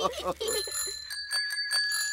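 Bicycle bells ringing: several quick rings at a few different high pitches, starting about half a second in.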